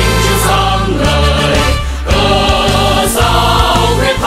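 Choir singing a Vietnamese army march song over instrumental accompaniment.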